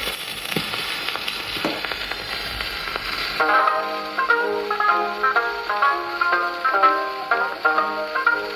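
Acoustic gramophone playing a 78 rpm shellac disc: the record's surface hiss starts suddenly, with a couple of crackles from the lead-in groove, and about three and a half seconds in a plucked banjo solo begins from the record, heard through the soundbox and horn with the hiss underneath.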